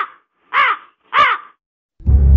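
A crow cawing three times, each caw short and harsh, about two-thirds of a second apart.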